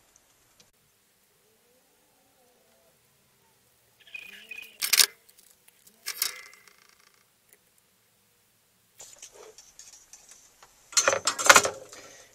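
Mostly quiet, then a few metallic clinks and knocks about five and six seconds in as a large soldering iron is handled and set into its coiled-wire stand. A louder burst of clatter from hands moving over the bench comes near the end.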